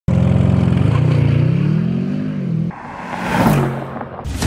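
Audi RS6's twin-turbo V8, fitted with a Milltek cat-back exhaust, accelerating hard, its note climbing steadily, then dropping abruptly about two and a half seconds in at an upshift. A louder rushing swell follows near the end.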